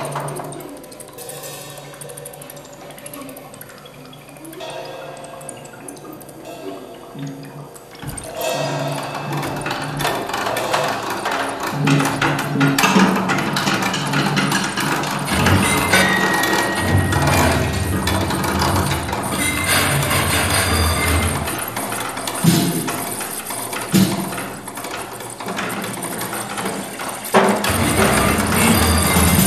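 Live improvised experimental music from percussion and keyboard: quiet sustained low tones at first, then about eight seconds in a dense, noisy wash swells up and holds, with a low drone in the middle and a few sharp hits near the end.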